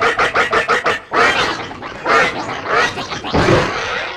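Cartoon character's voice: a rapid staccato run of pitched vocal sounds, about ten a second, over the first second, then bending grunts and mumbled exclamations.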